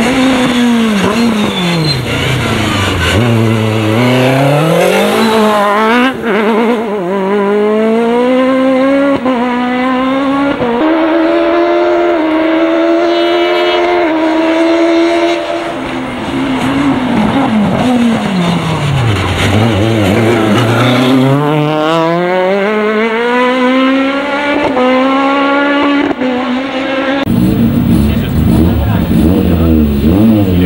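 Peugeot 306 Maxi kit car's naturally aspirated 2.0-litre four-cylinder rally engine at full effort on a stage: the revs drop away under braking, then climb again through a series of quick upshifts, heard over two runs. About three seconds before the end the sound cuts abruptly to a lower, uneven engine note.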